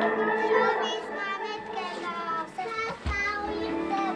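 Children's voices singing together over music that fades out about a second in. There is a single low thump just after three seconds.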